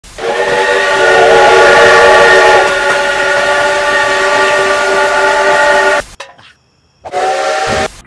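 Multi-chime steam locomotive whistle, CN #3254's, sounding a chord of several steady tones. It gives one long blast of about six seconds, then a short second blast near the end.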